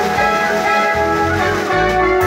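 Live band music played on electronic keyboards through a PA, with held brass-sounding lead notes and a heavier bass line from about a second in.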